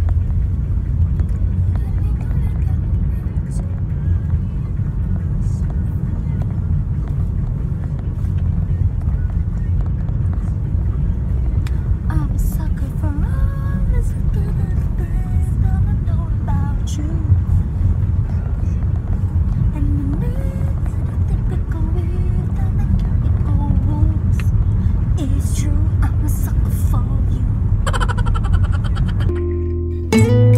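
Steady low rumble of road and engine noise inside a moving car's cabin, with young women's voices singing or talking over it.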